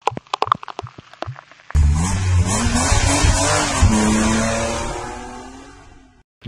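Animated logo intro sting: a quick run of sharp clicks, then a sudden loud burst of music and a car engine revving up in pitch, fading out toward the end.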